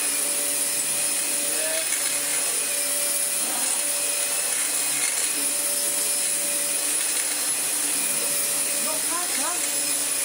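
Dyson DC25 upright vacuum cleaner running over carpet: a steady motor whine and rush of air, with its worn brush bar turning.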